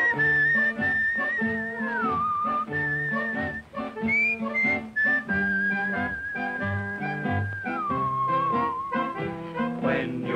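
A whistled melody over an instrumental accompaniment. It has long held notes that slide down in pitch twice, with a brief higher phrase in between.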